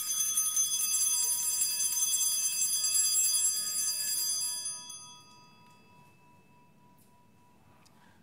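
Altar bells rung at the elevation of the chalice, marking the consecration of the wine at Mass. A bright cluster of high ringing tones is shaken for about four and a half seconds, then dies away over the next few seconds.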